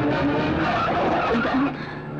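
A car being driven hard, with engine and tyre noise, that drops away sharply shortly before the end.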